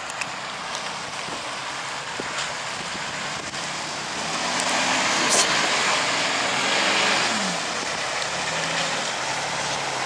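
Off-road 4x4 engine pulling the vehicle through a muddy, grassy ditch, revving up with a rising pitch around five to seven seconds in and getting louder as it comes close, over a broad rush of noise.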